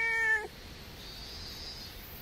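Domestic cat meowing: one long meow, steady in pitch, that ends about half a second in.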